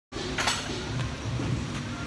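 Steady low background rumble, with a short burst of noise about half a second in.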